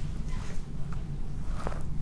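Faint clicks of jewellery pliers working a length of craft wire, twice, over a steady low hum.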